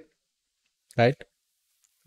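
Speech only: a man says one short word, "right?", about a second in, with dead silence either side.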